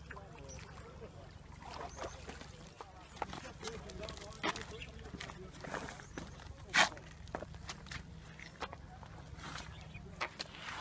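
Faint, distant voices outdoors, with scattered light clicks and knocks, the loudest a sharp knock about seven seconds in.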